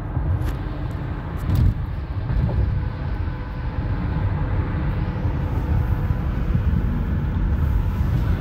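Car cabin noise at highway speed: a steady low rumble of tyres on the road and the engine, heard from inside the car.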